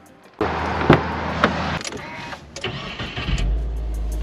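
Car interior sounds in a Subaru: two sharp clicks or knocks, then the engine starting with a low rumble near the end.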